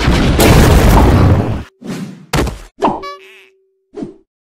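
Cartoon lightning-strike sound effect: a loud crash of thunder lasting about a second and a half, then a second, shorter crash, then a brief steady ringing tone near the end.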